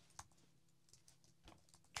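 A few faint, scattered keystrokes on a computer keyboard as a word is typed.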